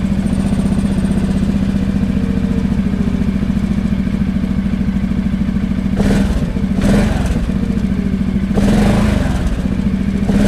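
Arctic Cat 700 EFI ATV's Suzuki-built engine idling steadily just after being started, with a few short louder moments in the second half, about six and seven seconds in and again near the end.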